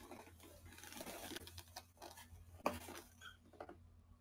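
Faint rustling and scratching, with a few soft clicks, over a low steady hum.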